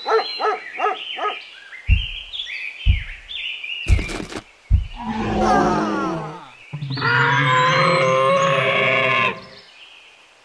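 Animal sound effects: a run of short, high yips stepping up in pitch with a few thumps, then a deeper falling growl and a long, loud roar beginning about seven seconds in that cuts off near the end.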